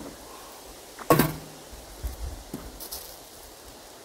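Metal clank of a small steel camp wood stove's door about a second in, with a short ring after it and a fainter click later, as pine cones are fed in as fuel.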